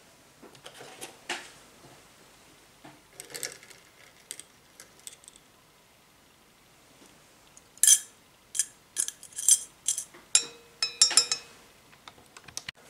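Metal tweezers clinking against a small glass beaker while zinc-coated copper wires are fished out of the sodium hydroxide bath. There are a few light ticks at first, then a quick run of sharp clinks in the second half, some of them ringing briefly.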